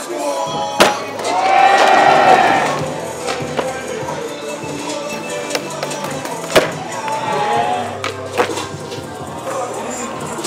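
Music plays with a skateboard knocking against the deck four times: sharp clacks of the board popping and landing, the loudest about a second in and about six and a half seconds in.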